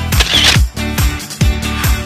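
Upbeat dance-pop background music with a steady kick drum about twice a second. Near the start, a short burst of noise like a camera-shutter sound effect lies over it.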